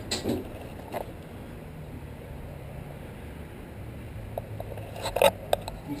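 Wooden dresser being moved across the floor of a moving truck's cargo box: a quiet low rumble with a knock about a second in and a quick cluster of louder knocks and bumps about five seconds in.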